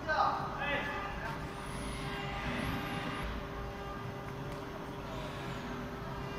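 A steady machine hum from the CNC router's workshop, with a short voice-like sound in the first second.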